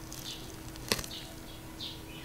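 Small birds chirping in the background: three short falling chirps, about three quarters of a second apart. A single sharp click is heard near the middle.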